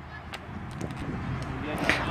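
Quiet open-air ambience of a youth football pitch, with faint distant voices of players heard about halfway through.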